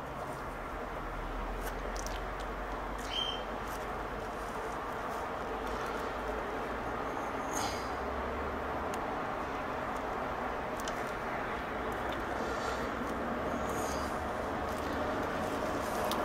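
Steady background hiss and hum, with a few faint, scattered clicks from a thin wire lead being worked into a circuit board's connector.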